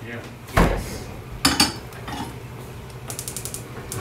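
Kitchen clatter of pans and utensils at a gas stove: two sharp clanks in the first half, then from about three seconds in a rapid ratchet-like clicking, about nine clicks a second.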